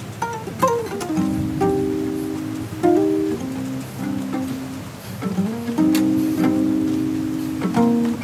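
Guitars playing a slow instrumental passage: plucked notes that ring on, a few of them sliding in pitch.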